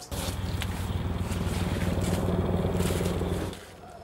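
A motor-driven machine running steadily with a low hum and a rough, grating noise, stopping abruptly about three and a half seconds in.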